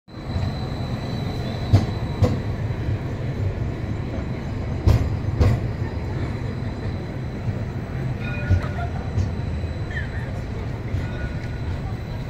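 CAF Urbos 3 tram passing close by at low speed: a steady low rumble with a faint high whine that fades by mid-way, and two pairs of sharp wheel clacks about half a second apart, near two seconds and again near five seconds.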